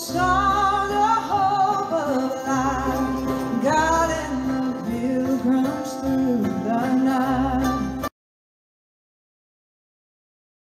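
Live acoustic string band of guitars, fiddle and upright bass playing a song, with male and female voices singing. It breaks off abruptly about eight seconds in, leaving dead silence.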